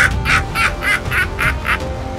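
A rapid run of short vocal bursts, about four a second, over background music. The bursts fade out near the end.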